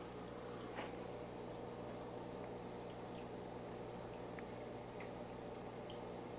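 Faint steady low hum with a few soft, faint ticks.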